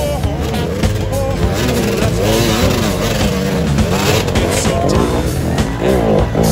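Enduro dirt bike engines revving up and down as the bikes splash through a shallow river crossing, with music playing along with them.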